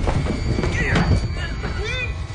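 Short strained cries and gasps of a person in a struggle, falling in pitch about a second in and again near the end, over a low steady rumble.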